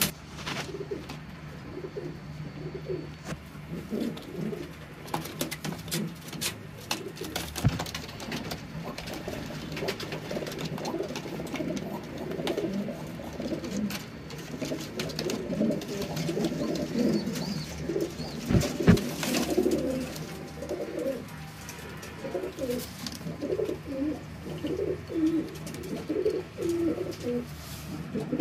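Domestic pigeons cooing over and over in a small loft cage, low rolling coos from several birds overlapping, with scattered sharp clicks and a louder knock a little past the middle.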